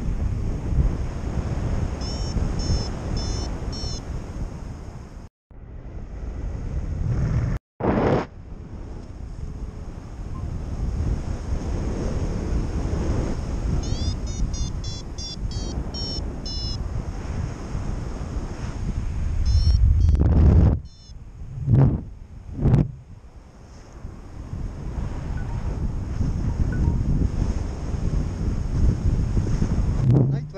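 Wind rushing over the camera microphone of a paraglider in flight: a steady low rumble that swells loudest about two-thirds of the way through, then gives two sharp gusts. Bursts of short, high, rapid chirps come through now and then.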